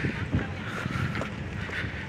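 Wind rushing over the camera's microphone with a low steady rumble underneath.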